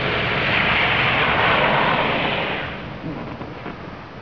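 An SUV driving past on the street, its tyre and engine noise swelling and then fading away about three seconds in.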